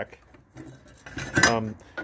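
Light metallic clinks and knocks of steel bracket pieces being handled and set down on a wooden workbench.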